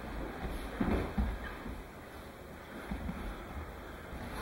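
Dull thuds of bodies and bare feet hitting the padded mat as attackers are thrown and roll out of aikido throws. The loudest cluster comes about a second in and a few lighter thumps follow near the end, over a low steady rumble.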